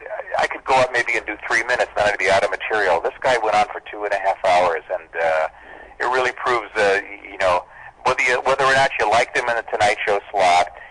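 Continuous conversational speech from a radio interview: men talking, with no other sound.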